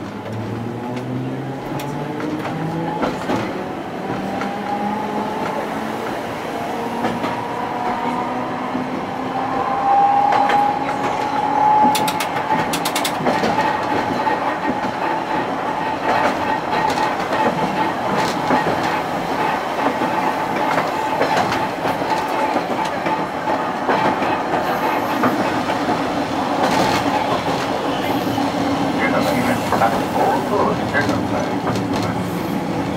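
Streetcar's nose-suspended (tsurikake) traction motor drive whining as the tram accelerates under power, the whine climbing in pitch over the first ten seconds and then holding steady, with wheels clicking over the rail joints.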